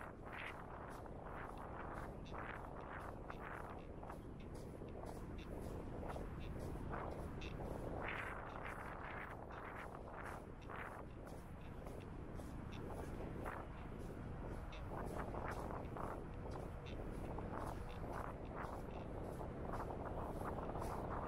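Footsteps crunching on dry, loose sand at a walking pace, about two steps a second, over a low steady background rumble.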